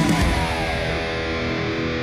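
Distorted Les Paul Custom electric guitar playing heavy metal over a backing track, with sustained chords and several tones gliding downward through the middle.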